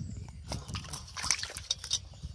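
Fish being untangled by hand from a nylon gill net over an aluminium bowl of water: scattered clicks, rustles and small splashes of the netting and the wriggling fish, busiest from about half a second in.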